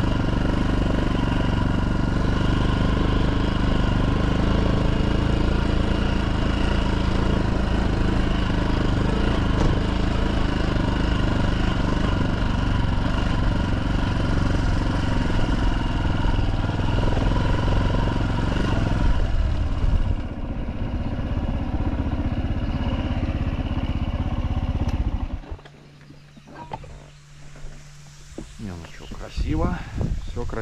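Minsk X250 motorcycle's single-cylinder engine running steadily under way on a dirt track. Its note drops to a lower, easier running about two-thirds of the way through, and it stops suddenly near the end, leaving only faint knocks.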